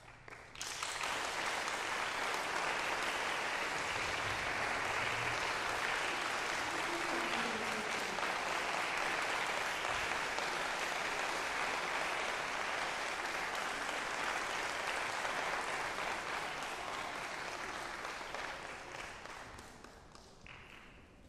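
Audience applauding: the clapping starts about a second in, holds steady, and fades away near the end.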